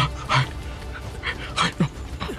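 A person breathing hard while running, with short, sharp gasping breaths a few times in two seconds, over a low music bed.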